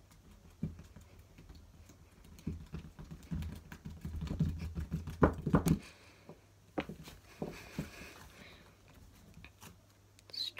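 Thick green slime being poked repeatedly with one finger and squished: a run of soft clicks and sticky pops, busiest from about two and a half to six seconds in, with a few scattered ones after.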